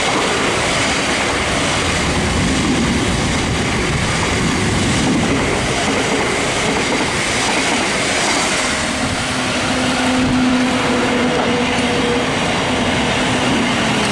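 Thameslink Class 700 electric multiple unit passing close by at speed: a steady loud rush of wheels on rail. A faint high steady tone runs through it, and lower steady tones join about nine seconds in.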